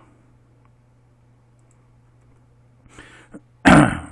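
A man coughing once, a short loud cough near the end, with a faint breath just before it; he has a cold.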